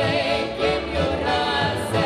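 Live Ukrainian folk song: several women singing in harmony, with a violin and a piano accordion playing along.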